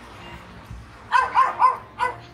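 A dog barking: three quick barks about a second in, with a fourth starting at the very end.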